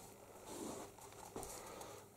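Faint rustling of clothing and camera-handling noise while a handheld camera is carried.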